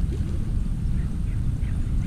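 A hooked largemouth bass splashing and thrashing at the water's surface as it is played on the line, over a steady low rumble of wind on the microphone.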